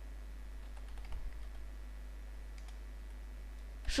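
Faint typing on a computer keyboard: scattered keystrokes with a short quick run about a second in, over a steady low hum.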